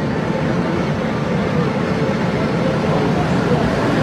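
Steady rushing outdoor background noise with faint voices in it.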